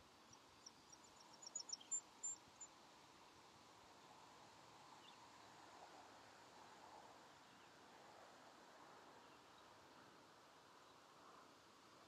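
Near silence with a faint outdoor hiss. In the first couple of seconds a quick run of high, thin chirps speeds up and grows louder, then stops.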